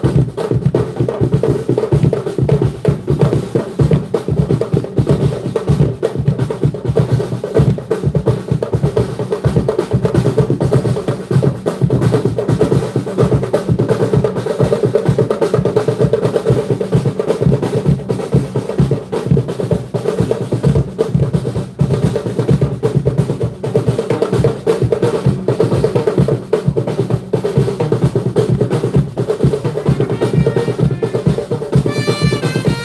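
Drums playing a fast, steady rhythm without a break: snare rolls over a bass drum.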